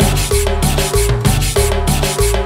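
Live cumbia band playing, a scraped güiro rasping in a steady rhythm over a pulsing bass line and repeating keyboard figures.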